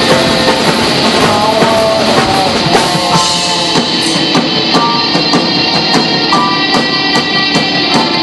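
A live rock band playing loud: drum kit and electric guitars, with a steady run of cymbal strikes in the second half.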